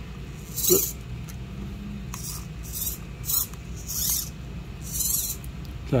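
Small 3D-printed plastic chassis parts being handled and worked by hand, giving about six short, scratchy rubbing and clicking sounds as the newly fitted steering arm is moved to check it turns freely.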